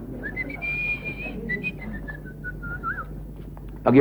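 A man whistling a short tune: a rising glide to a held high note, then a run of lower notes stepping down, ending with a quick little turn.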